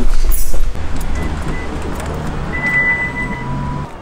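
Background music with a car's powered tailgate opening: a motor whine that rises slightly in pitch for about three seconds and stops just before the end.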